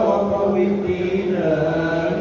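A man's voice chanting a religious recitation through a microphone, in drawn-out, held notes.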